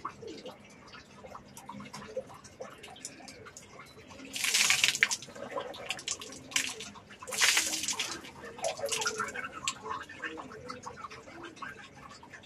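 A finger rubbing the teeth with small wet clicks and scrubbing. There are two loud splashy bursts of water spat out of the mouth, one about four seconds in and one about seven seconds in.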